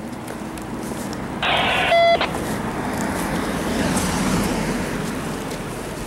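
A car passing on the street, its noise swelling to a peak about four seconds in and then easing off. About a second and a half in comes a short burst from a two-way radio with a brief beep.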